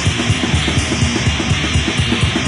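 Thrash metal song played by a full band, with rapid, evenly spaced drum beats under a dense wall of instruments.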